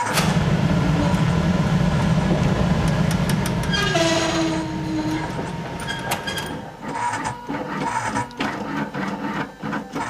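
Machinery running. It gives a loud low rumble for the first few seconds and a short falling tone about four seconds in, then settles into a quieter stretch with scattered clicks.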